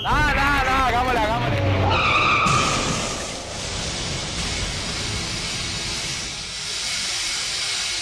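Car tyres squealing in a skid, the pitch wavering up and down for about two seconds, then giving way to a steady noisy hiss for the rest.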